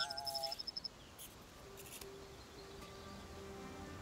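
Small droid's electronic chirping: a rapid string of high beeps, about a dozen a second, over a short wavering two-note tone, lasting under a second at the start. Then soft, sustained music notes.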